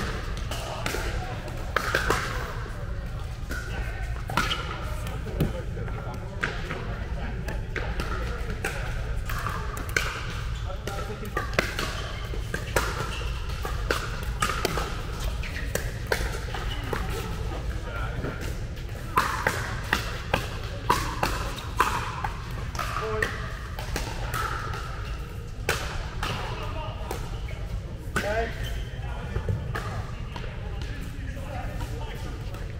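Pickleball paddles hitting a hollow plastic ball in doubles rallies: repeated sharp pops at uneven intervals, coming in quick runs, with bounces on the court. Players' voices and chatter carry in the hall, over a steady low hum.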